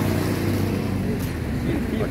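A motor vehicle engine running close by, a low steady hum that fades after about a second and a half, with street noise around it.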